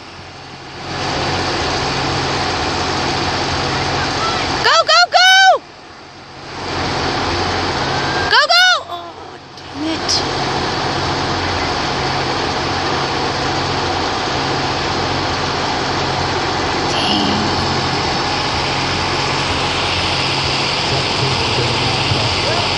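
Loud, high-pitched yells of encouragement from a spectator, twice in the first ten seconds, each a few quick calls that rise and fall in pitch, over a steady background noise.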